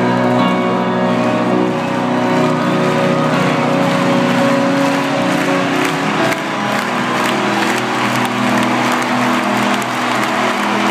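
Live rock band in a stadium, heard from the stands: sustained held chords through the PA, with crowd cheering and applause thickening over the second half.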